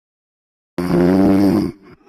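A cartoon character snoring: one loud, drawn-out voiced snore of about a second, starting a little under a second in.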